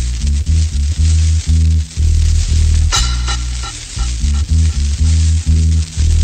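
Instrumental reggae dub track played from a dubplate: a heavy bass line moves from note to note under a steady crackle and hiss of record surface noise. A sharp drum hit comes about halfway through.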